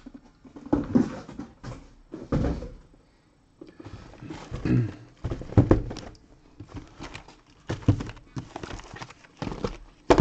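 Cardboard trading-card boxes being handled, shifted and set down on a table, giving an irregular string of knocks and thuds.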